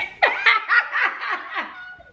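A woman laughing: a run of about eight quick 'ha' pulses, each dropping in pitch, growing quieter toward the end.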